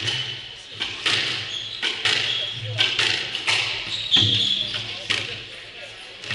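Squash balls being struck and hitting the court walls, sharp echoing smacks about once a second in a reverberant hall, with a few short sneaker squeaks on the wooden floor.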